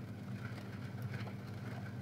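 A steady low motor hum with a faint hiss over it, with no change through the pause.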